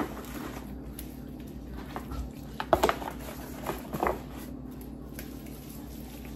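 Gloved hands massaging seasoned pork shoulders in a disposable aluminium pan: quiet wet handling sounds, with two brief louder ones about three and four seconds in, over a steady low hum.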